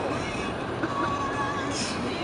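Steady road and engine noise inside a moving car's cabin, with music playing faintly and a short hiss near the end.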